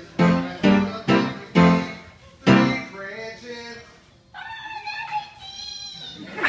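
Stringed instruments strummed in about five separate chords, each ringing out and fading. About four seconds in, a high wavering note comes in, sliding up and down in pitch.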